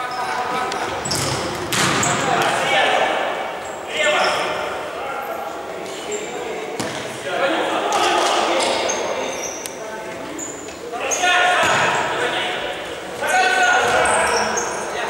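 Futsal match in an echoing sports hall: players shout to one another in repeated bursts, while the ball is kicked and bounces on the hard court with sharp thuds. Short high squeaks of shoes on the floor come in between.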